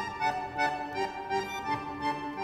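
Accordion music: a quick line of short, repeated notes played over lower reed notes.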